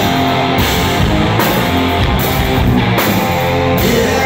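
Live rock band playing loud: electric guitar riff over drums and bass, with no vocals in this stretch.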